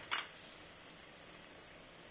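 Onion-tomato masala sizzling gently in a wok over low heat, a steady hiss, with one short tap just after the start.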